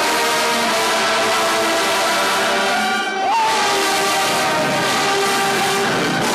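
A marching band's brass section, led by trombones, playing loud sustained chords. About three seconds in there is a brief break, with a pitch sliding upward before the chords resume.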